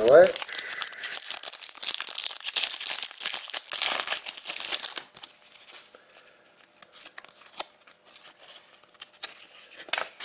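A foil trading-card pack wrapper being torn open and crinkled for about five seconds, followed by quieter, sparse ticks and slides as the cards are handled.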